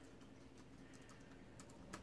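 Faint, scattered clicks of typing on a laptop keyboard.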